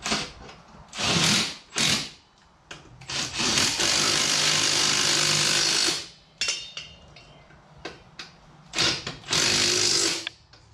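A handheld power tool running in bursts on the ATV's rear wheel nuts as the wheel is fitted: a few short spins, one long run of about three seconds in the middle, and two more short runs near the end.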